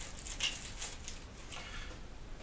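Faint rustling and crinkling of small plastic packaging being handled, in a few short scratchy bits.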